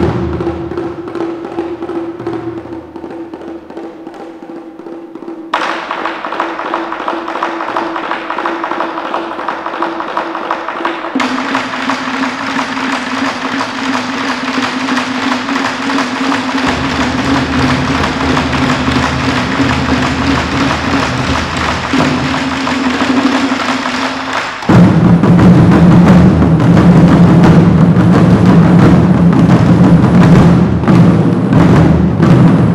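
Chinese drum ensemble playing. After a loud stroke comes a quieter passage, then rapid drumming from about five seconds in that builds steadily as more drums join. The full ensemble comes in loud about 25 seconds in.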